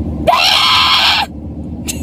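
A loud, high-pitched shriek lasting about a second, rising in pitch at its start, over the steady rumble of car road noise.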